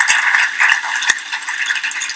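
Studio audience applauding, a dense patter of many hands clapping that thins out and fades.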